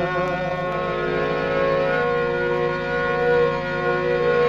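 Instrumental break in a Punjabi folk song, played from an old 45 rpm record: a harmonium holds long, steady chords that shift pitch a couple of times, with no singing.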